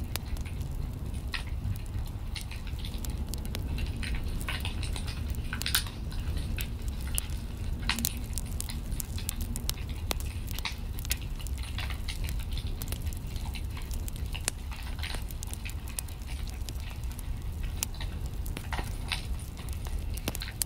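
Wood fire in a fireplace crackling: irregular sharp pops and snaps over a low steady rumble.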